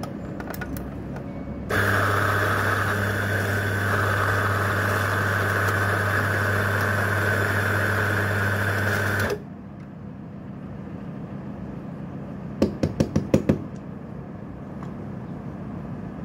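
Electric coffee grinder motor running steadily for about seven and a half seconds, grinding the espresso dose, then cutting off sharply. A few seconds later comes a quick run of about six knocks.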